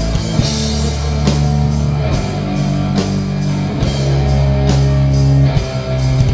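A live thrash metal band playing an instrumental passage. Distorted electric guitars and bass hold long low chords that change every couple of seconds, under regular drum and cymbal hits.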